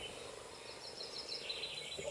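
Faint bird chirping, a few quick high notes, over low background noise.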